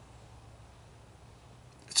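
Quiet background: a faint steady hiss with a low hum and no distinct sound, until a man's voice begins at the very end.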